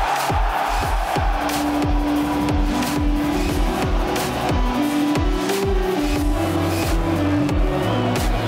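Background music: an electronic track with a deep, repeating drum beat about twice a second under a held melody.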